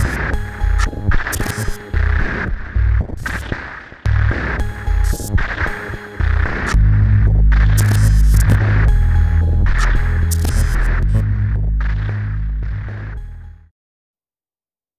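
Electronic logo-intro sound design: deep pulsing bass throbs broken by sharp, glitchy static crackles, then a loud steady low drone from about halfway that cuts off suddenly near the end.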